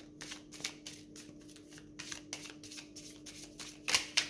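A deck of oracle cards shuffled by hand, cards slipping from one hand onto the other in a string of short, irregular flicks, the sharpest one near the end.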